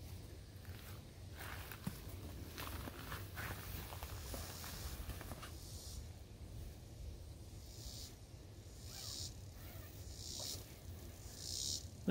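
Faint rustling of a nylon hammock and mesh bug net as a person shifts about inside it, with scattered soft clicks and several brief swells of high hiss.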